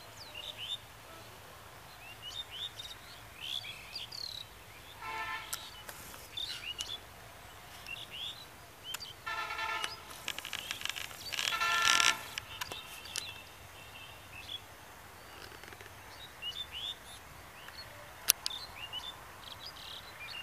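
Birds chirping in short calls throughout. A distant horn sounds briefly about five seconds in and again for about three seconds from nine seconds in, along with a rushing noise that swells and cuts off near twelve seconds; a single sharp click near eighteen seconds.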